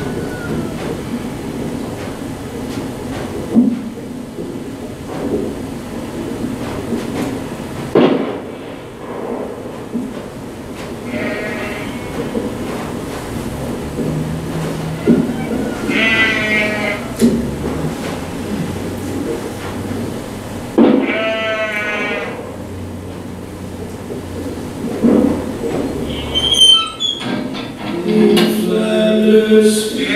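Soundtrack of a short art film played back in a room: a low drone with a few sharp knocks, and three quavering, pitched calls a second or so long, about eleven, sixteen and twenty-one seconds in.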